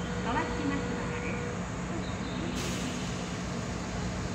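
Kintetsu electric commuter train standing at the platform, its onboard equipment humming steadily, with brief bits of a station announcement voice near the start.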